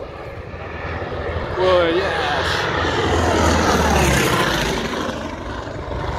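Piston engine and propeller of a Fokker D.XXI fighter making a low fly-by: the sound grows louder, is loudest through the middle, then eases off as the aircraft passes.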